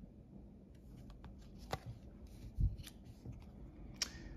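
Faint clicks and rustles of glossy trading cards being handled and shuffled in the hands, with a few sharp ticks, the clearest nearly two seconds in, and a soft low thump a little after halfway.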